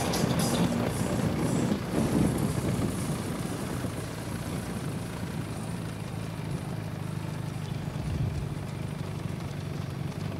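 Steady hum of a vehicle engine with road noise, a little louder in the first few seconds.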